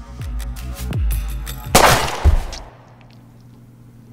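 Tense film score with deep booming hits that drop in pitch, broken by a single loud gunshot from a pistol about two seconds in, with a second heavy hit half a second later. After that the sound drops to quiet room tone.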